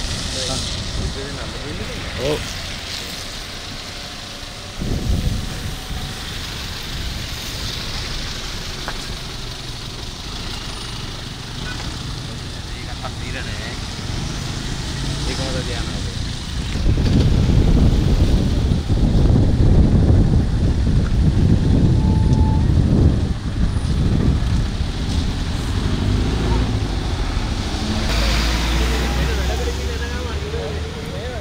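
Road traffic passing on a wet road, tyres hissing, with a heavy vehicle going by a little past halfway as the loudest part, building up and then fading. A brief thump comes about five seconds in.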